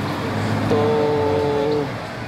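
A man's voice drawing out one word on a steady pitch for about a second, over a steady low background hum.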